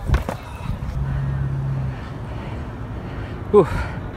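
A runner's breathless "whew", one falling exhale near the end, over a low rumbling background with a few knocks at the start and a steady low hum for about a second in the middle.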